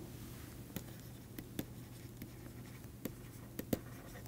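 Stylus on a pen tablet writing by hand: faint, irregular taps and scratches as the letters go down, over a low steady hum.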